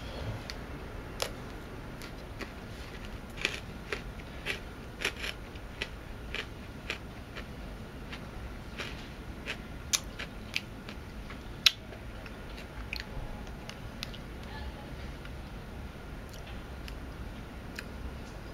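Chewing a Violet Crumble, a chocolate-coated honeycomb bar: irregular sharp crunches as the brittle honeycomb breaks between the teeth, the loudest about two-thirds of the way through, thinning out in the last few seconds.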